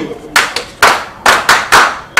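Hands clapping: about five sharp, loud claps at uneven spacing over a second and a half.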